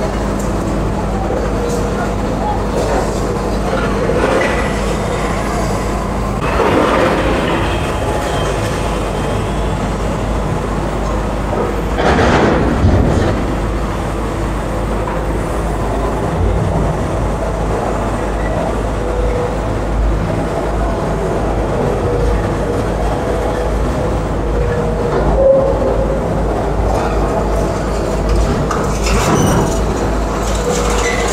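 Heavy demolition excavators' diesel engines running steadily at a concrete demolition site, with louder swells of noise about seven and thirteen seconds in as the machines work.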